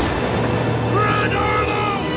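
Low steady rumble of rushing floodwater surging down a canyon, with a drawn-out, gliding shout about a second in.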